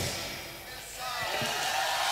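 A live band's song stops, and the sound dies away in the hall. About a second in, a voice faintly begins calling out.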